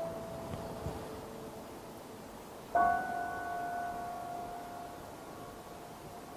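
Steinway grand piano playing slow, quiet notes: one note held at the start, then a single louder high note struck nearly three seconds in and left to ring and die away slowly.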